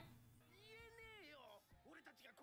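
Near silence. A faint high-pitched voice-like call, rising and then falling in pitch, starts about half a second in and lasts about a second.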